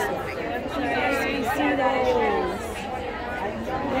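Indistinct voices talking, with background chatter.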